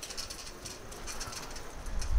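Birds calling over faint outdoor background noise.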